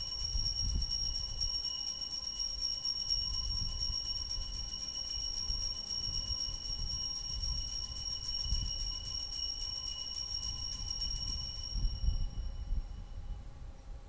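Altar bells rung continuously as a rapid, high-pitched jingle while the priest blesses the congregation with the monstrance at Benediction. The ringing stops about twelve seconds in.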